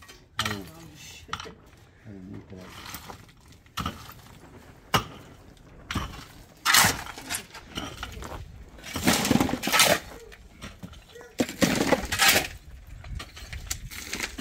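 Shovels scraping and digging into loose stone and concrete-block rubble, with stones clattering. A few sharp knocks come first, then longer, louder scrapes in the second half.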